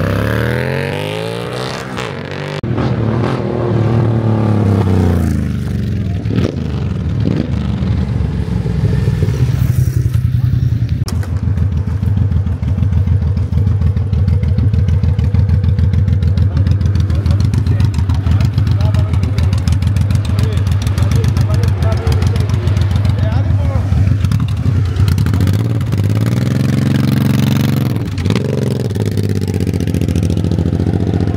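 Motorcycle engines at a drag-race start line: a sport bike revs and pulls away at the start, then a big cruiser motorcycle idles close by with a steady beat and revs up as it launches near the end.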